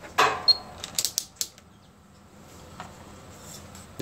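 Rotary range selector of a digital clamp meter being turned through its detents: a handful of sharp clicks in the first second and a half, with a brief high beep about half a second in. After that there is only faint handling noise.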